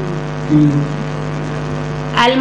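Steady electrical mains hum from the hall's microphone and sound system, with a short louder swell about half a second in.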